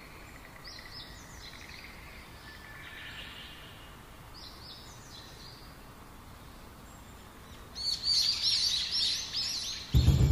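Quiet outdoor ambience with birds chirping: a few short high chirps early on, then a quick series of louder repeated chirps over the last two seconds.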